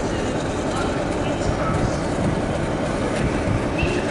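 Diesel locomotive's engine running steadily as it draws slowly along the platform, with voices in the background.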